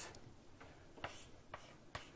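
A few faint, sharp ticks about half a second apart in a quiet room, made by a pen tip tapping and scratching the writing surface as an equation is written.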